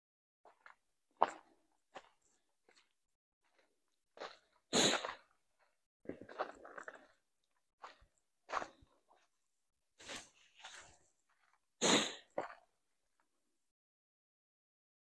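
Footsteps on dry fallen leaves and old patchy snow, an uneven step every second or so, some much louder than others, the loudest about five and twelve seconds in.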